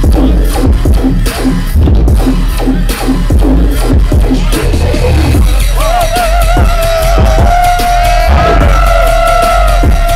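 Loud live dubstep played through a club sound system: heavy sub-bass under a choppy, stuttering beat. About halfway through, a wavering high synth line comes in and holds to the end.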